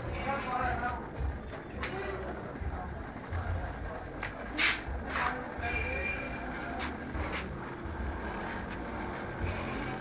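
Indistinct background voices over a low, steady rumble, with a few sharp clicks and knocks; the loudest click comes a little before the middle.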